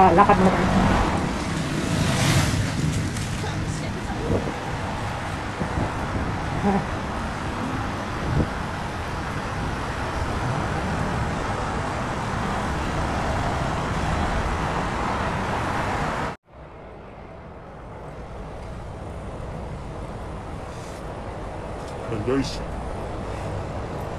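Road traffic noise from slow, congested city traffic, with car and truck engines running close by. About sixteen seconds in it cuts off suddenly, leaving a quieter steady background.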